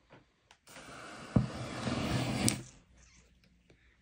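Flash paper and flash wool igniting in a remote-controlled heating-element ashtray: a rushing hiss of flame lasting about two seconds, with a sharp pop partway through and a click near the end.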